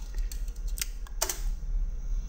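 A few short clicks of computer keyboard keys, the clearest two just under and just over a second in, over a steady low hum.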